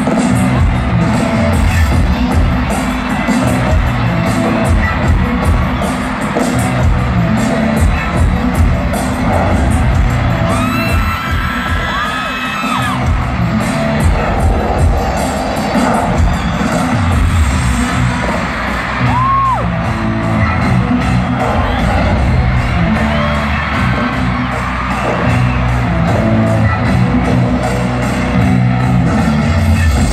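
Loud music with a heavy bass beat playing through a stadium sound system, recorded from within the crowd, with a few fans' screams rising over it about a third of the way in and again past the middle.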